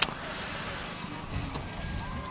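Steady low rumble of a running generator under open-air ambience, with a single sharp click at the very start.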